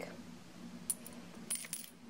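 Faint light clinks of glass perfume bottles being handled: a single tick about a second in, then a quick cluster of bright clinks with a slight ring.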